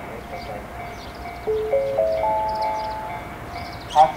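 Station public-address chime: four notes rising one after another, each held and ringing together before fading, the signal that opens a platform announcement.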